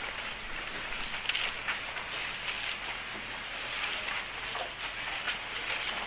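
An audience turning the pages of their Bibles: a soft, uneven papery rustle with small scattered crackles.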